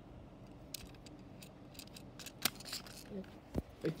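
Sharp plastic clicks and taps from a Happy Meal toy boat being handled. There are a few spread-out clicks, the loudest about two and a half seconds in and again near the end.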